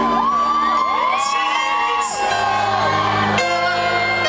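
Live music: a woman singing a long run of notes that bend and curl in pitch, over grand piano chords that come in more fully about halfway through, with a few whoops from the audience.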